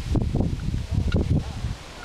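Wind buffeting the microphone: an irregular low rumble that dies down near the end.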